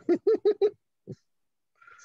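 A man laughing: four quick, rhythmic "ha" bursts, one more a moment later, then a soft breathy exhale near the end.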